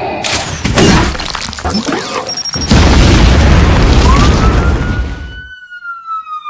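Loud crashing sound effects, then about three seconds in a big explosion that rumbles on for a few seconds and cuts off suddenly. Near the end a siren starts, rising in pitch and then slowly falling.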